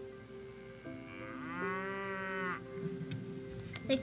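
A cow mooing once, one drawn-out call of about a second and a half starting about a second in, over soft sustained background music.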